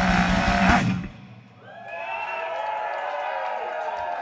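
Live heavy metal band ending a song: a loud held final chord with the singer's sustained yell cuts off about a second in. After a brief lull, the crowd cheers and whoops.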